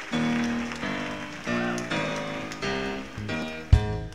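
Live gospel band intro: a keyboard plays a run of sustained chords, changing about twice a second, over audience applause. Near the end a sudden loud low hit comes in from the band just before the vocal starts.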